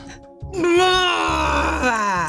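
A woman's long, drawn-out groan of dismay, lasting about a second and a half and sliding down in pitch, over a game-show music bed.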